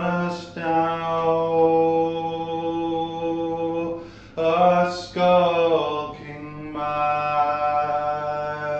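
Unaccompanied male voice singing a slow folk dirge, holding long drawn-out notes, with a break for breath about four seconds in before the next phrase.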